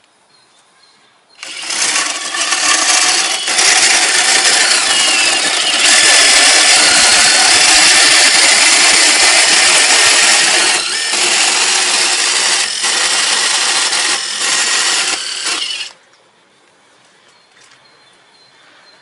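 Makita cordless impact driver hammering as it drives a long M10 threaded rod into a wooden beam through a 1/4-inch hex stud adaptor. It starts about a second and a half in, runs steadily with a few short let-offs in its last few seconds, and stops about two seconds before the end.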